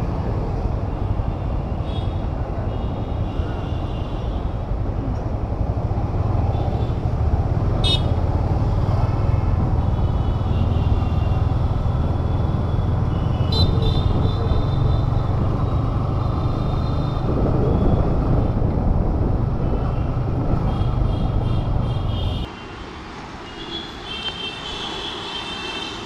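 Riding noise from a Yamaha MT-15 motorcycle: a steady low rumble of the engine and road, with vehicle horns tooting now and then from traffic. The rumble drops away suddenly near the end as the bike comes to a stop.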